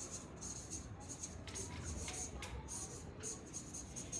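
Marker pen squeaking and scratching across flipchart paper in a run of short, quick strokes as a name is written out.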